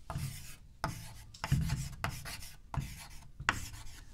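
Chalk writing on a chalkboard: about half a dozen short, scratchy strokes with brief gaps between them.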